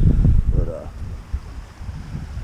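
Wind buffeting the microphone: a loud, gusty low rumble, strongest in the first half second and then settling to a weaker rumble. A brief rising voice-like sound comes about half a second in.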